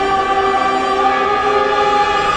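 Trailer soundtrack music: a choir singing long, held notes.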